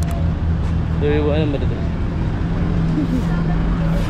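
A vehicle engine running steadily close by, a low rumble and hum under street traffic noise.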